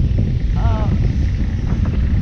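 Wind buffeting a GoPro's built-in microphone while riding a recumbent trike: a loud, rough, steady rumble, with a woman's voice briefly heard through it.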